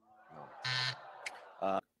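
Game-show buzzer sounding once for about half a second right after the contestant calls G, the sign that G is not in the puzzle.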